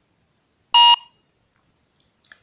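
A mobile barcode-scanner app gives a single short electronic beep, about a second in, confirming a successful barcode scan.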